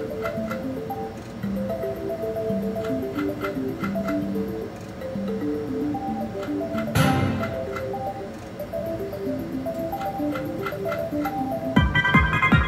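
Mystical Unicorn video slot machine playing its melodic game music through the reel spins, with light ticks over it and one sharp click about seven seconds in. A brighter win jingle starts just at the end as a small line win pays.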